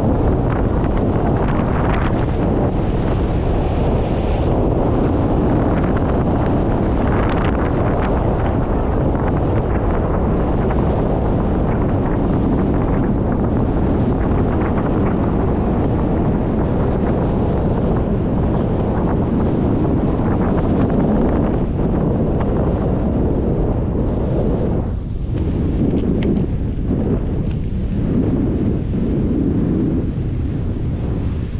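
Loud, steady wind buffeting the microphone of a camera carried by a skier moving downhill, easing briefly near the end.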